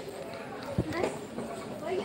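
Footsteps on concrete stairs, with a low thump a little under a second in, amid people's voices.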